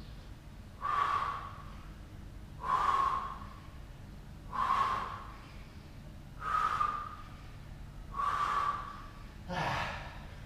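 A man breathing hard while holding a plank, with forceful exhalations about every two seconds; the last, near the end, is partly voiced.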